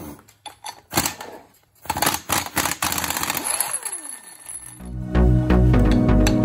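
Pneumatic impact wrench rattling in short bursts, the longest from about two to three and a half seconds in, then a falling whine as it spins down. Background music with a steady beat comes in about five seconds in.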